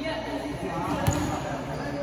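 A volleyball struck once by a player's hand on the serve: one sharp slap about a second in, ringing in a large gym hall, over players' voices.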